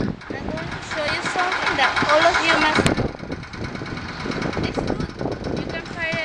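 A woman's voice speaking over steady outdoor background noise, with one sharp click about halfway through.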